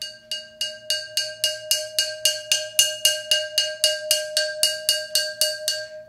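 A ceramic flowerpot struck over and over with a mallet, about three strokes a second, each ringing one clear bell-like pitch. The strokes swell louder toward the middle and ease off a little near the end. This is the "swell with sticks" cue that ends a section of the piece.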